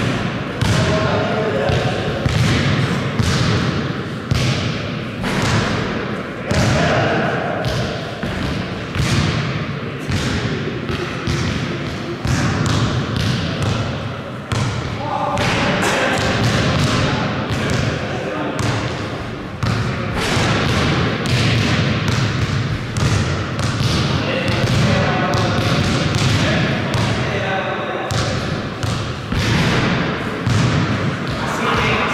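A basketball being dribbled and bounced on a hard gym floor, with repeated thuds through the whole stretch, mixed with players' voices calling out during play.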